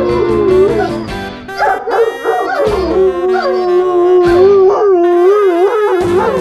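A dog howling in long wavering notes that rise and fall, over background music with a steady beat.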